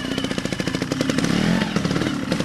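Trial motorcycle's single-cylinder engine running at low revs, a rapid even train of firing pulses, as the bike climbs a dirt slope.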